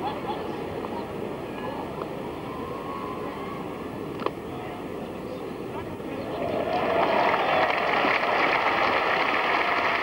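Cricket-ground crowd murmuring, a single sharp crack of bat on ball about four seconds in, then the crowd noise swelling into applause and shouts for the runs from the shot.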